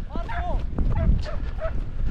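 Scent hounds giving tongue on a hare's trail: one drawn-out bay, then several short yelps. Low wind rumble on the microphone.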